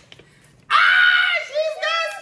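Children screaming in excitement: quiet at first, then a sudden loud, high-pitched shriek about two-thirds of a second in, followed by a shorter second shriek near the end.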